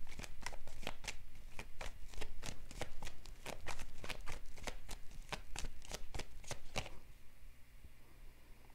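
A tarot deck being shuffled by hand: an even run of quick card strokes, about three or four a second, that stops about a second before the end.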